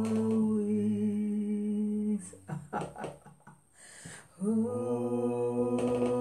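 A woman singing long, held notes unaccompanied. She breaks off for about two seconds in the middle and then takes up the held notes again.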